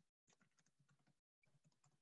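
Near silence, with a few very faint ticks or clicks.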